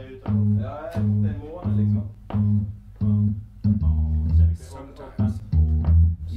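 A low bass note played over and over at an even pace, about three every two seconds, then moving to lower, longer notes about four seconds in, with a man's voice over it.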